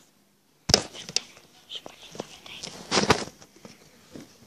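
Handling noise on a hand-held tablet's microphone: a sudden sharp knock a little under a second in, then scattered clicks and rustles, with a louder burst of rustling and knocks about three seconds in.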